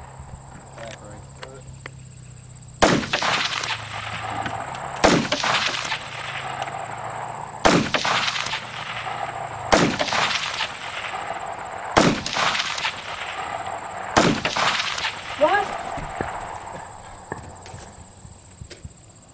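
A scoped rifle fires six single shots, slow and evenly paced about two seconds apart. Each shot is followed about half a second later by a fainter second crack.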